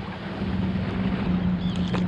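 A boat's motor running with a steady low hum under wind noise on the microphone and water around the hull.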